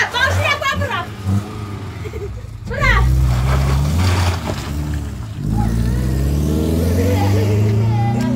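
A car engine running, then pulling away and accelerating, its pitch rising steadily over the last few seconds.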